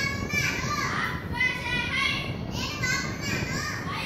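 Children's voices speaking together, reciting short Urdu phrases of about a second each.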